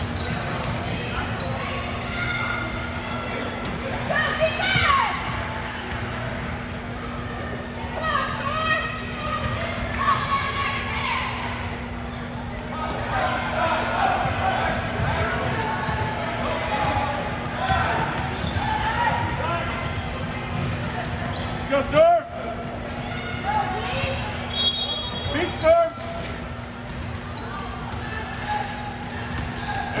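Basketball game sounds in a large, echoing gym: a ball dribbling and bouncing on a hardwood court amid indistinct voices of players and spectators, over a steady low hum. Two brief louder sounds stand out late on.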